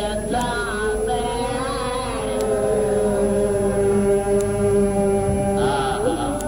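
A man's voice chanting a mournful Shia lament, slow and drawn out. The pitch bends over the first couple of seconds, then settles on one long held note for about three seconds and moves on near the end.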